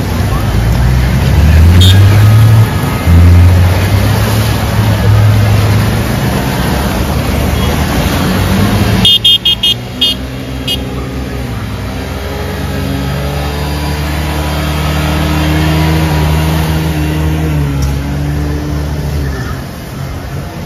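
Motor traffic wading through flood water on a road: engines running with a loud rushing noise of wheels pushing through water. A horn beeps several quick times about nine seconds in, after which a single engine hums steadily, rising and falling gently in pitch.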